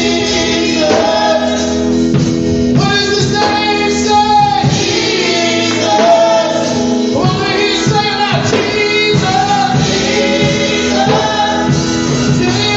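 Live gospel song: a man and a woman singing with long held notes over instrumental accompaniment with a steady beat.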